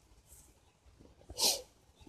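A man's short, sharp breath in, about a second and a half in, taken in a pause before he speaks again; otherwise near silence.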